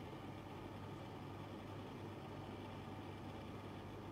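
Faint, steady background hiss with a low hum, with no distinct events.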